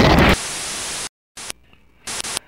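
Cartoon laser-blast sound effect made of loud white-noise static. A heavy burst in the first third of a second gives way to a steadier hiss that cuts off abruptly about a second in, followed by a brief second burst of hiss.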